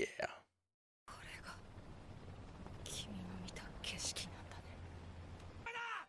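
Hushed, whispered voices over a low steady hum from the anime's soundtrack, with a few short hissy sounds. Just before the end a louder voice comes in, calling "Let's go! Finish it off!"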